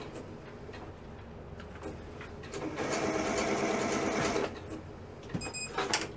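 Sewing machine stitching a knit sleeve hem with a double (twin) needle. After a quieter pause with a few small clicks, it runs steadily for about two seconds, starting about two and a half seconds in. It stops, followed by a few clicks near the end.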